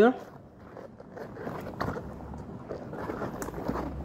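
Hands working the rubber hood of a Soviet PBF gas mask, the rubber rubbing and rustling, with a few small clicks, as a filter is fed into its pocket.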